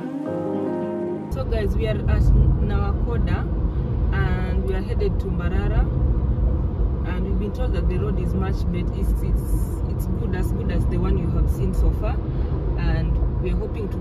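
Acoustic guitar background music cuts off about a second in, giving way to the steady rumble of a car's engine and tyres on the road, heard from inside the moving car.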